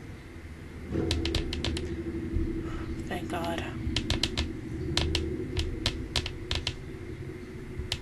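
A run of sharp, irregular clicks or taps in clusters, starting about a second in, over a steady low hum, with a short voice about three seconds in.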